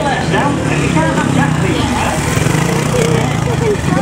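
A trials motorcycle engine running steadily at low revs, with voices talking over it.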